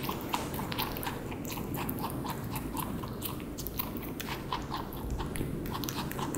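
Holland lop rabbit chewing grape, close-miked: a quick, even rhythm of small wet clicks and crunches from its mouth.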